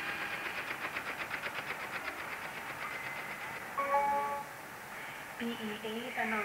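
Split-flap departure board clattering as its flaps flip over: a rapid, even clicking of about ten clicks a second that fades out after about three seconds.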